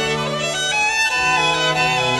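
Background music: bowed strings playing slow, held notes that change pitch about once a second.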